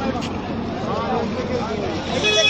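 Crowd babble: several people talking at once, their voices overlapping into a steady murmur, with no single voice standing out.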